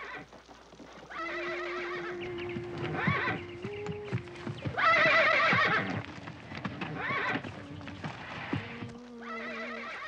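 Horses whinnying again and again, about five neighs with the loudest about halfway through, while hooves clop on dirt in a corral.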